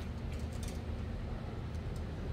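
Steady low outdoor background rumble, such as distant engines or traffic, with no distinct events.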